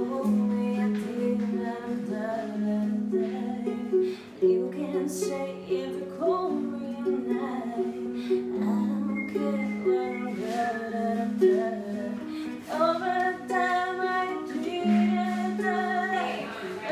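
A song being sung and played, a voice carrying a melody over a plucked string instrument.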